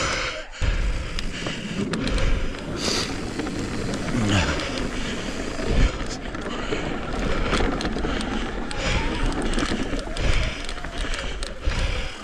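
Mountain bike riding down a forest trail, heard from a chin-mounted camera: steady wind noise on the microphone, with the tyres rolling over dirt and across a wooden boardwalk. Frequent short clicks and knocks come from the bike over rough ground.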